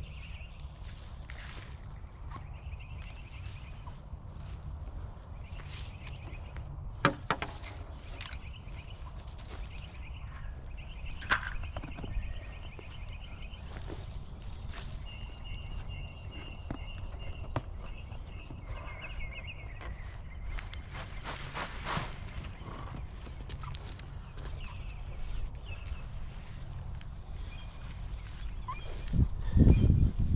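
A black plastic nursery pot being pushed and tipped to free a banana plant's root ball: scattered knocks and rustles, the sharpest a pair about seven seconds in and a louder burst of handling near the end. Under it runs a steady low wind rumble on the microphone, and a bird's short, repeated trilling chirps come and go.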